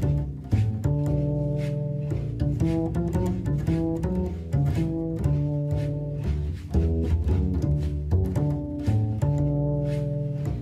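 Double bass played pizzicato: a continuous jazz-style line of plucked notes, some short and some left ringing.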